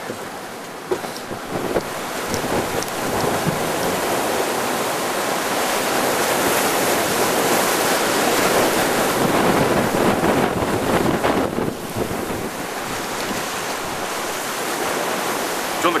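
Wind buffeting the microphone and rough sea rushing past a sailing yacht's hull under sail. The noise builds to its loudest about halfway through, then eases slightly.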